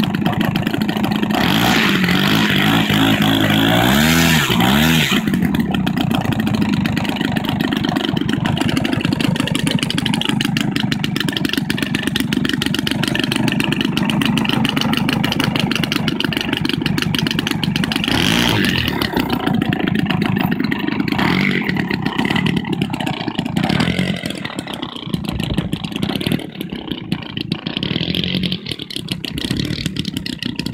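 Engine of a large-scale radio-controlled Yak 54 model aeroplane running on the ground. It is revved up and down in the first few seconds and again about two-thirds of the way in, then gets quieter as the plane taxis away across the field.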